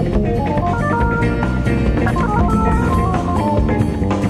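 Jazz-fusion band playing live: drum kit and bass keep a steady groove under a lead line that steps up and down in quick, short notes.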